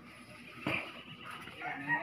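Rooster crowing faintly in the background, the crow beginning in the last half second. A short knock comes about a third of the way in.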